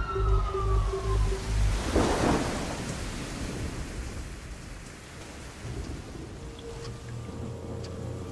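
Soundtrack sound effects: a pulsing alarm tone with a falling siren-like glide cuts off about a second and a half in. About two seconds in, a thunder-like rumble swells and gives way to a steady rain-like hiss, with faint held music tones near the end.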